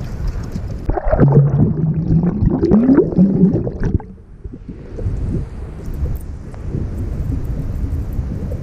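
Kayak paddling on open water: a steady low rumble of wind on the action camera's microphone with water sloshing, and a louder, muffled pitched sound that rises and falls from about one to three and a half seconds in.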